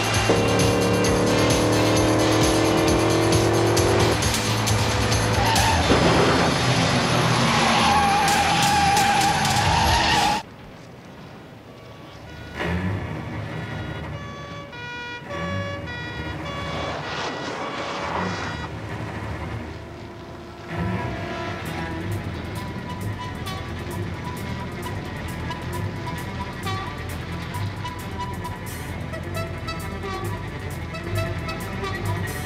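Car-chase soundtrack: car engines revving and tyres squealing, with background music. The loudest part comes first, with a long tyre squeal just before the sound drops off abruptly about ten seconds in. After that comes quieter engine noise under the music, which picks up again about two-thirds of the way through.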